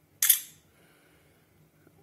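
A smartphone camera's shutter sound plays once, a short sharp click about a quarter second in that dies away quickly, as a photo is taken.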